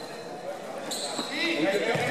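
Indoor futsal play: the ball being kicked and bouncing on the court, with shoe squeaks and shouting players, echoing in a large hall. It grows louder about halfway through, when a steady high squeal comes in.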